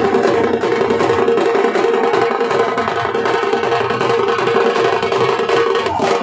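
Loud traditional festival music: fast, dense drumming with a held melody line running over it.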